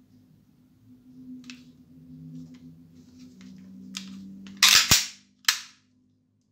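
Airsoft Glock pistol being handled with light clicks, then its slide cycling with three loud, sharp metallic clacks: two close together near the five-second mark and one more half a second later.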